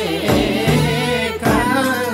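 Limbu palam folk song: singing over instrumental backing, with a low beat about once a second.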